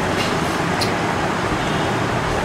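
Steady, even rushing background noise, with two faint light ticks in the first second.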